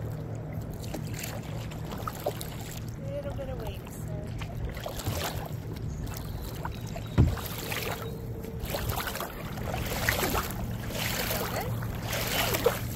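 Water splashing and sloshing around a paddleboard, with a short swish every second or two like paddle strokes, over a steady low hum. A single sharp knock about seven seconds in.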